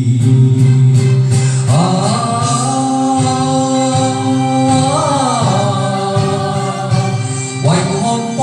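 A man singing karaoke into a handheld microphone over a loud backing track, holding one long note from about two seconds in that bends in pitch shortly after the middle, then starting a new phrase near the end.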